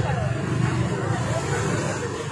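A steady low rumble with people's voices talking over it, the rumble easing slightly toward the end.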